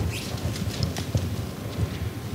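Soft, irregular taps and rustles of a Bible being handled and its pages moved, over a steady low hum.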